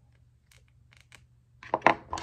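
Plastic action-figure head being worked on its neck peg during a head swap. A few faint clicks come first, then a louder cluster of sharp plastic clicks and snaps near the end.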